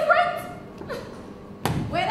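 A sung phrase trails off, then a single heavy thud about a second and a half in, and a voice starts again right after it.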